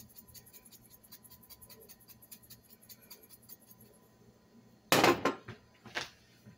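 Pepper being ground over a pot: a faint, rapid, even run of clicks lasting about four seconds, followed about five seconds in by a loud clatter of a hard object being set down.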